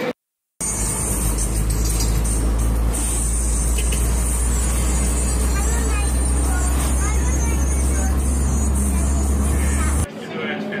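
Steady low rumble of a car driving, engine and road noise heard from inside the cabin. It starts just after a moment of silence and cuts off suddenly at the end.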